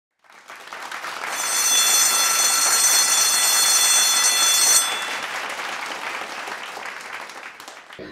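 Intro logo sound effect: a whoosh of noise swells up over the first two seconds with a bright, steady shimmer of high tones layered on it. The shimmer cuts out about five seconds in, and the whoosh then fades away slowly.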